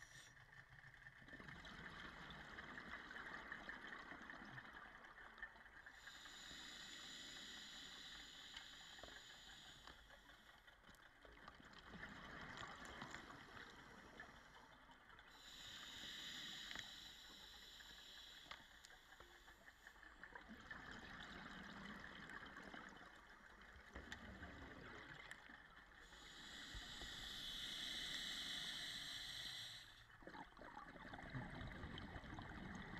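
Faint underwater scuba breathing on a regulator: three slow breaths about ten seconds apart, each with a few seconds of hiss, and bubbling exhalations between them.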